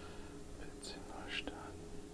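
A man muttering a few words under his breath, close to a whisper, with a single sharp click about one and a half seconds in.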